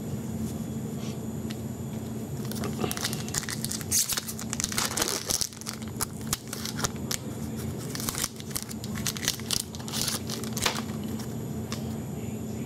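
Foil trading-card pack wrapper being torn open and crinkled in the hands, an irregular run of sharp crackles starting a couple of seconds in and stopping shortly before the end, over a steady low hum.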